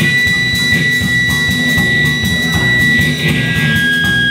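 Live blues trio playing: an electric guitar holds long sustained high notes over an electric bass line and a drum kit keeping time on the cymbals.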